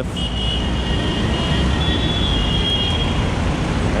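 Motorcycle riding slowly through city traffic: a steady mix of engine, road and traffic noise, heaviest in the low end, with a faint thin high tone through most of it.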